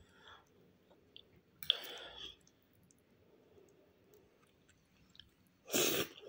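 Faint mouth sounds of a person eating: quiet chewing with small scattered clicks, a brief soft noise about two seconds in, and a breathy noise just before the end.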